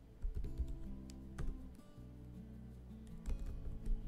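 Computer keyboard keys typed in short irregular clusters of clicks, with background music playing underneath.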